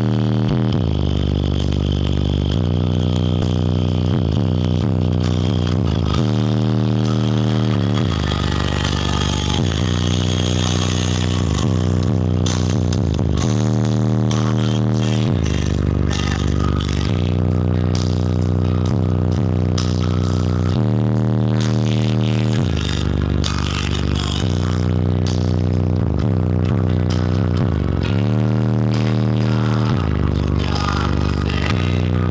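Bass-heavy music played loud through a car audio system of six 18-inch subwoofers with PRV mids and highs. Deep held bass notes change pitch every couple of seconds, sliding between some of them.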